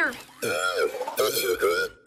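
Wordless, voice-like sounds from a cartoon character, pitched and wavering up and down, starting about half a second in and stopping just before the end.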